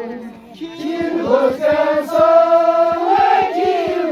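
A group of voices chanting a traditional Ladakhi wedding song in long held notes. The sound dips briefly just after the start, then swells again.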